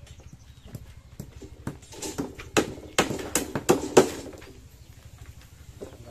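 Irregular hard knocks and taps from building work on a wooden roof frame and concrete-block wall, with a cluster of louder knocks between about two and four seconds in.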